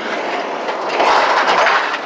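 A passing road vehicle: a steady rush of tyre and engine noise that swells about a second in and then eases off.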